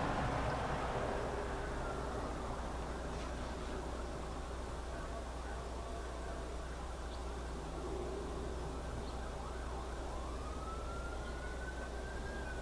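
Emergency-vehicle sirens wailing some way off, their pitch sliding slowly up and down, with one wail rising near the end. A steady low hum runs underneath.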